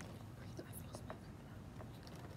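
Faint whispered speech, with a few small clicks.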